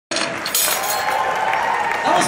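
Crowd applauding and cheering in a large concert hall.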